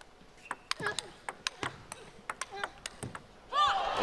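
Table tennis rally: a plastic ball clicking off the rackets and bouncing on the table in quick alternating strikes for about three seconds. The last shot clips the top of the net and drops in. Near the end a man's voice exclaims.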